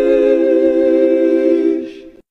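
A 'heavenly sheesh' sound effect: voices hold the long 'ee' of 'sheesh' as a steady choir-like chord of several pitches, which ends with a soft 'sh' and fades out near the end.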